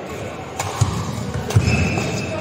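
Badminton rally: two sharp racket hits on the shuttlecock about a second apart, with players' feet thudding on the court between and after them. A high shoe squeak starts near the end.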